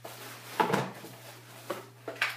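Cardboard box being opened and handled: a sharp knock about two-thirds of a second in and a smaller one near the end, with faint rustling between.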